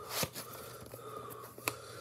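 Faint handling noise as a VHS cassette and its sleeve are moved about, with a light click about a quarter second in and another near the end.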